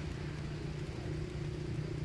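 A steady low hum from a running engine, even throughout.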